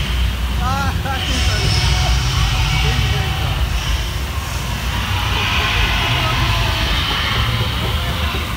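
Steady low rumble with a hiss over it inside a theme-park water ride's dark show building, where fog effects are going off around the boat. A short high cry rises and falls about a second in.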